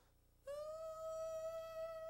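A single high musical note held steady, starting about half a second in with a slight upward scoop.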